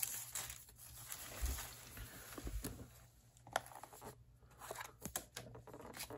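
Tissue paper rustling and crinkling as it is unwrapped from a watch box, faint, with a few short sharp clicks and taps of the box being handled.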